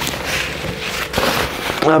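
Rustling and crackling of a nylon shell jacket, the Salewa Puez 2L, being stuffed into a Mammut Trion backpack, with the pack's fabric and drawstring closure handled, and a few small clicks.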